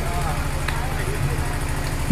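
A pause in an amplified speech: steady low rumble and hum of the surroundings, with faint voices in the background.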